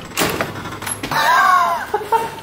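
A hotel room door being opened: two sharp clicks in the first second, the latch and handle, then a short rising-and-falling tone about a second in.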